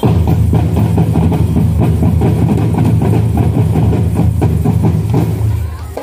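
Marching band drumline playing a fast, loud cadence on bass, snare and tenor drums with cymbals. It starts suddenly and drops off just before the end.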